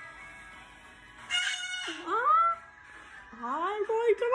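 White cockatoo giving a loud, harsh screech about a second and a half in, followed by a few rising and falling calls.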